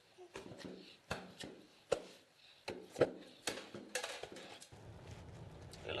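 Wooden pestle pounding yam in a mortar: a run of dull thuds, about one or two a second. Near the end it gives way to the steady low hum of a car cabin.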